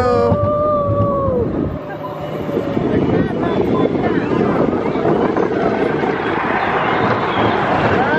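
Expedition Everest roller coaster train rolling along its track, a steady rumble with wind on the microphone. In the first second and a half there is a long, held voice-like cry that falls off at its end.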